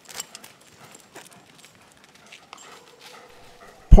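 Several dogs milling around on pavement while being handed treats: faint, scattered paw scuffs and small taps, with a brief, faint held tone a little before the end. A narrator's voice starts right at the end.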